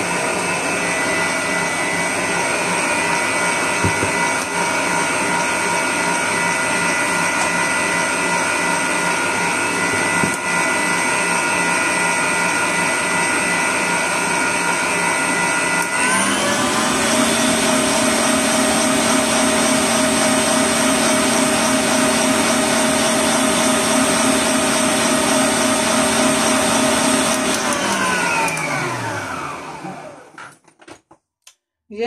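Electric stand mixer running with a wire whisk, beating an egg batter. About halfway through it is switched to a higher speed and its pitch steps up. Near the end it is switched off and the motor winds down to a stop.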